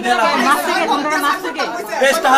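Speech: a man talking, with other voices chattering around him.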